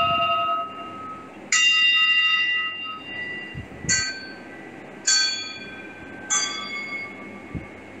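Singing bowls struck one after another, about four strikes, each ringing out with clear, slowly fading tones. The bowls differ in pitch, so the ringing changes from one strike to the next.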